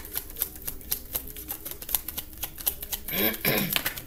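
A deck of tarot cards being shuffled by hand: a quick, irregular run of soft clicks as card slips against card. About three seconds in there is a short vocal sound from the reader.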